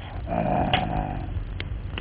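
A cartoon lion's growl, lasting about three-quarters of a second in the first half, followed by a couple of sharp clicks.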